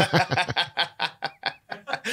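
Male laughter: a quick string of short, breathy laughs that dies down near the end.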